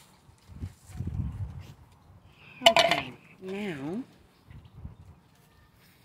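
Muffled knocks and handling noise in the first second or so, then two short voice sounds about halfway through.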